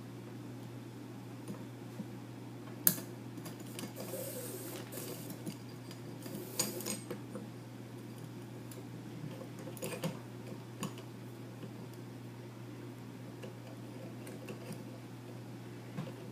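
Metal lamellar plates clinking against each other and the wooden tabletop as they are handled while paracord is threaded through their holes, with short rustles of the cord being drawn through. A few scattered clinks, the sharpest about three seconds in, over a steady low hum.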